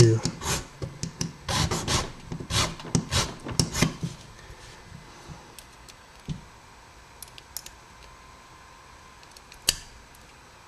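A pippin file being drawn across a key blank to cut a bitting notch, about two strokes a second for the first four seconds; the file is nearly worn out. After that it goes quieter, with a few light ticks and one sharp click near the end.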